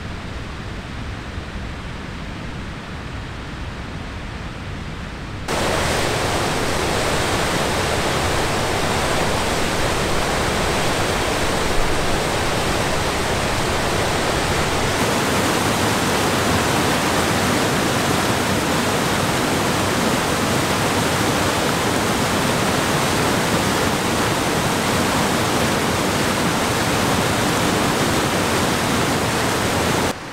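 Glacier-fed mountain creek cascading over granite boulders: a loud, steady rush of white water that cuts in abruptly about five seconds in, after a quieter, lower rush.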